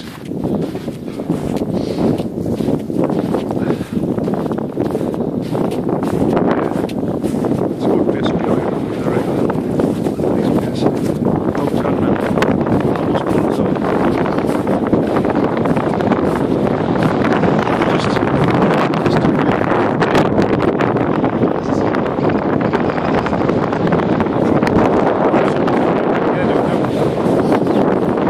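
Wind buffeting the microphone: a loud, steady rushing that builds a few seconds in and stays up, with a man's voice partly buried under it.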